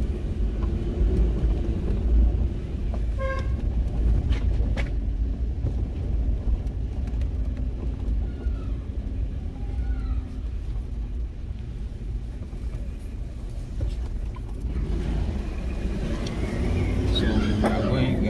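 Car interior noise while driving slowly over an unpaved sandy road: a steady low rumble of engine and tyres, with a brief horn-like toot about three seconds in.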